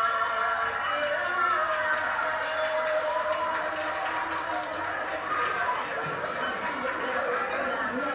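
Several voices talking over one another, without clear words, on an old home-video recording played back from a TV.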